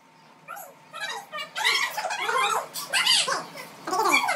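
A dog whining and yelping in short, repeated cries that rise and fall in pitch, among people's voices.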